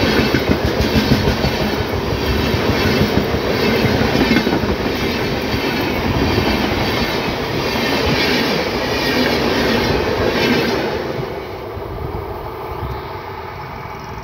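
Indian express train of LHB passenger coaches running past at speed close to the track, its wheels clattering over the rails. The noise falls away about eleven seconds in as the last coach passes.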